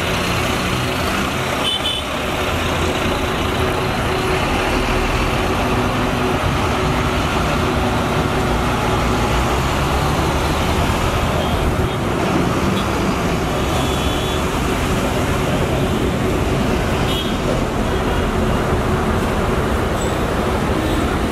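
Volvo B9R coach's diesel engine running as the bus pulls away, over a steady wash of highway traffic. A few brief high-pitched tones from passing traffic cut through, about two seconds in and twice more in the second half.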